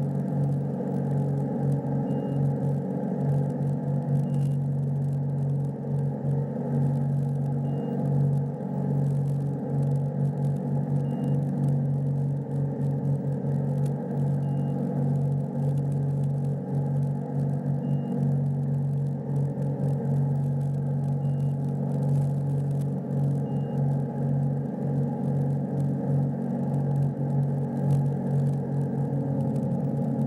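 Ski boat engine running steadily at constant speed while towing a slalom skier, heard from the stern, with short high electronic beeps every two to four seconds.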